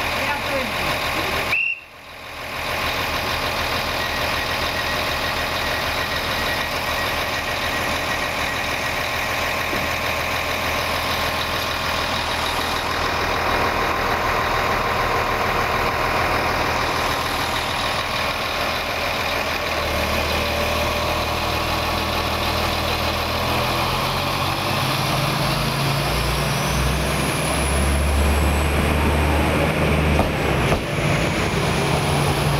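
České dráhy electric passenger train humming at a standstill, then pulling away past the listener. Its traction-motor whine rises in pitch over the last few seconds, and low tones build in the last third.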